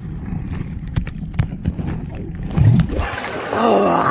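Churning waterfall-pool water heard through a phone microphone held underwater: a muffled rumble and bubbling with the high sounds cut off. About three seconds in the microphone comes up out of the water, the open-air rush of water returns, and a man shouts and laughs.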